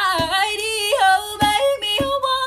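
Background music: a song with a high voice singing a melody that slides and bends between notes over regular accompanying note attacks.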